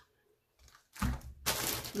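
A short thump of something set down on a wooden table, then about half a second of crinkling from a clear plastic bag being picked up.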